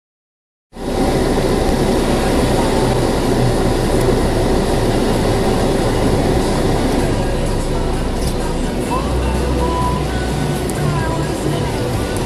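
Car driving slowly on a rain-wet street, heard from inside the cabin: steady engine hum and tyre noise on the wet road, cutting in just under a second in.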